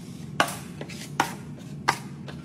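Three sharp clicks, about three-quarters of a second apart, over a steady low hum.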